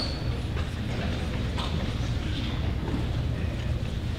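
Pause in a concert hall before a band starts playing: a steady low hum, with a few faint clicks and rustles as the players ready their instruments.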